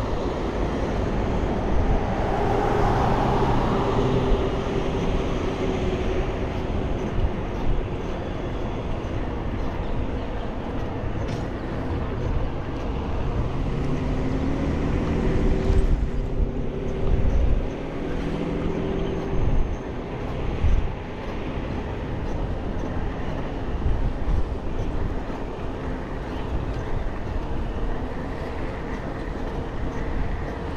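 Road traffic passing close by a moving bicycle, over a steady rush of wind and road noise. Engine tones rise and fall as vehicles go by, most clearly about halfway through.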